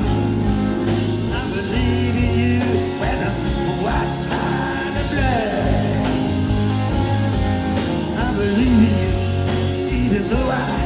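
Live band music in a slow rock song's instrumental passage, a lead instrument bending and sliding notes over steady bass.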